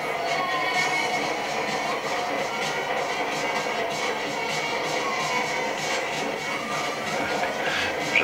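Music accompanying a fireworks show, playing steadily with no distinct firework bangs standing out.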